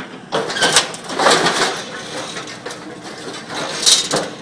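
Excavator-mounted hydraulic scrap shear (MC430R) working a pile of scrap steel: irregular clanks, scraping and crunching of metal as the jaws bite and drag the pieces, with sharp knocks a little after the start and just before the end.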